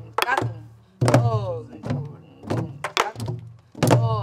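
Several sori-buk (Korean pansori barrel drums) played together with stick and palm, practising a jangdan. The strokes fall at uneven spacing, and each heavy stroke rings with a tone that drops in pitch.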